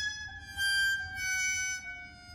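Symphony orchestra playing a quiet passage: a few high notes held and overlapping, moving step by step to new pitches.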